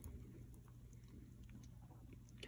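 Near silence: a faint low hum with a few faint ticks.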